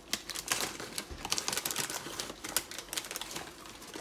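Plastic chip packet crinkling and crackling as it is handled and opened, in rapid, irregular bursts.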